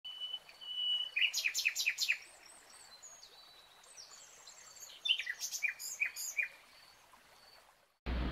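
Birds chirping: a thin high whistle, then a quick run of short falling chirps about a second in, faint high whistles, and a second run of chirps around five seconds in.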